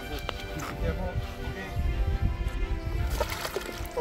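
Shallow river water sloshing and splashing as a freshwater stingray is lowered in and released and a foot stirs the water, with background music throughout.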